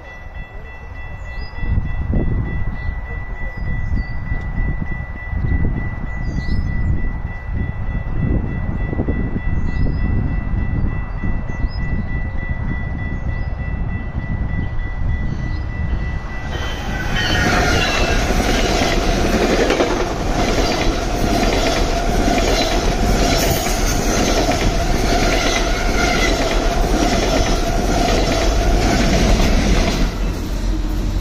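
GO Transit diesel locomotive and bilevel passenger coaches passing at speed close by. A loud steady rush of engine and wheels sets in suddenly about halfway through, with a rapid regular clatter of wheels over the rail. Before that there is only a low rumble.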